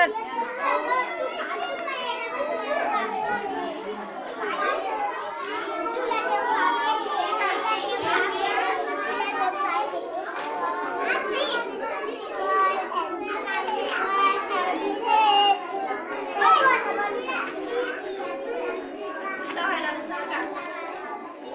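Many young children talking and calling out over one another, a continuous babble of kids' voices with no single speaker standing out.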